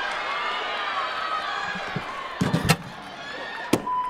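Gymnastics vault over arena crowd noise: a quick cluster of heavy thuds from the springboard and vaulting table a little past halfway, then a single sharp landing thud near the end, a stuck landing.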